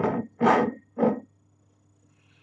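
Two short, loud intakes of air through a wine glass, a taster nosing and drawing in the wine, about half a second and one second in.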